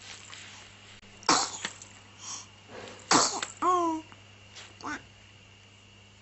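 A two-month-old baby vocalizing: two short, loud breathy bursts about two seconds apart, then a brief pitched coo just after the second, and a couple of fainter breathy sounds about five seconds in.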